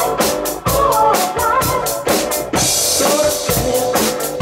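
Two acoustic drum kits playing a steady beat together, kick, snare and cymbals, over a recorded backing song with a melody line. A crash cymbal rings out about two and a half seconds in.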